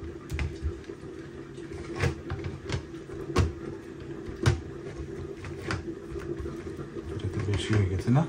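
Short, scattered taps and clicks as turmeric-coated hilsa fish steaks are handled, turned and rubbed on a ceramic plate, over a steady low hum.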